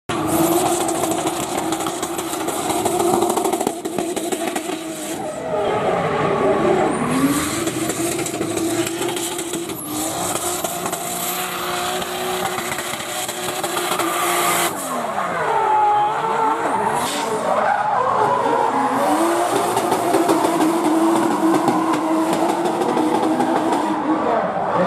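Drift car's 2JZ straight-six engine revving hard, its pitch dropping and climbing again and again as it slides, with tyres squealing and spinning throughout.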